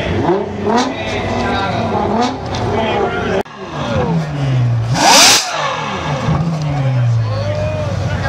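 Ferrari F12berlinetta's V12 being revved in repeated blips while parked, the engine note climbing and falling away again. A sharp, loud burst comes about five seconds in, at the top of one rev.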